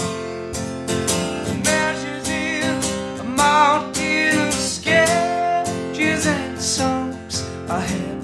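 Acoustic guitar strummed steadily, with long wordless sung notes that waver in pitch over it.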